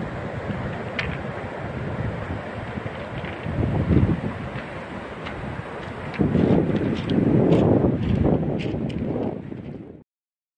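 Wind buffeting a mobile phone's microphone over surf breaking on a shingle beach, with stronger gusts about four seconds in and again for a couple of seconds past the middle.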